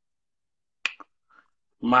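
Silence, then two sharp clicks in quick succession a little under a second in, and a voice starting to speak near the end.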